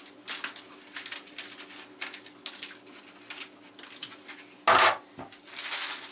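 Crisp dried apple chips and plastic food-dehydrator trays being handled: light clicks and rattles of the chips and trays, with a louder plastic clatter a little under three-quarters of the way in and a plastic rustle near the end.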